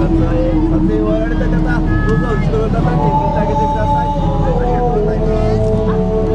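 Live music from an outdoor stage over a PA: a slow melody of long held notes, stepping to a new pitch a few times, with people talking close by and a steady low hum underneath.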